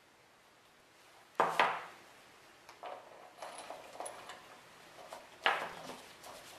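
Metal clinks and rattles of zinc-plated bolts being handled and set into an outboard water pump housing. There are two loud clatters, one about a second and a half in and one near the end, with lighter clicks between them.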